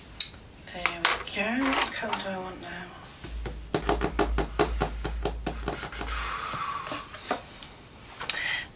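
Coloured pencils clinking and rattling together as they are picked through in their set, a quick run of clicks for about three seconds in the middle, with some low muttering before it.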